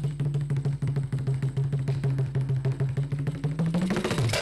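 Carnatic percussion playing, with the khanjira frame drum featured: fast, dense hand strokes over a low sustained tone that rises in pitch just before the end.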